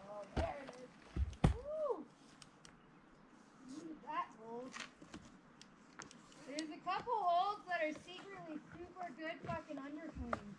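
Faint, indistinct talking that the words cannot be made out of, coming in stretches through the second half, with a few short low thumps in the first two seconds.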